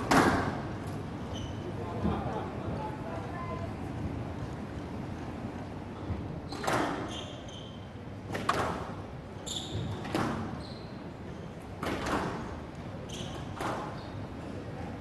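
Squash ball being struck by rackets and slapping off the court walls, a sharp crack every second or two with a hall echo. Short high squeaks of court shoes come with some of the strikes.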